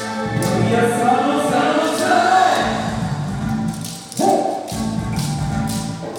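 Yosakoi dance music with singing, with sharp clacks of wooden naruko clappers through it. A loud new phrase comes in suddenly about four seconds in.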